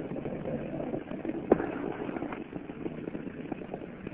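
Open channel of the launch commentary audio feed between callouts: a steady hiss and rush of line noise, with a single sharp click about one and a half seconds in.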